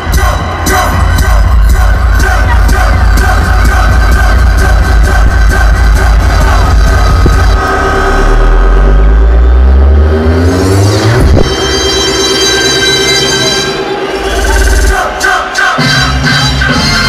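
Loud electronic dance music from a DJ set over a PA, driven by a heavy pounding bass beat. About halfway through, a rising bass sweep builds up and the beat drops away for a few seconds, then kicks back in near the end.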